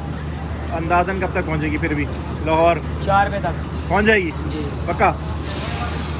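Several people's voices, including a drawn-out call that rises and falls about four seconds in. Underneath is a steady low hum from the engine of the standing train.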